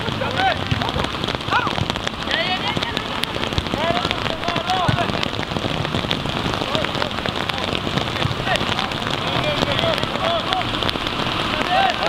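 Steady patter of rain on a surface close to the microphone, full of fine crackling drops. Short distant shouted voices come through it now and then.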